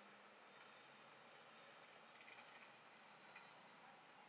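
Near silence: faint room hiss with a few tiny, faint ticks.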